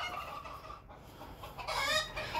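Chickens clucking, with a rising pitched call near the end.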